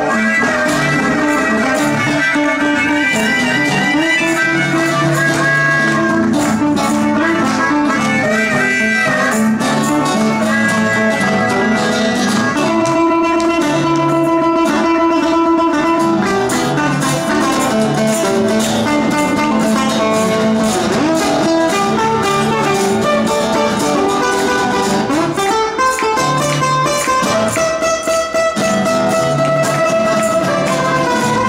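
Live blues band playing: harmonica near the start, with acoustic and electric guitars.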